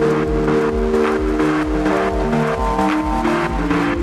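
Progressive house track in a DJ mix: a steady four-on-the-floor kick drum, about two beats a second, under sustained synth chords that change pitch.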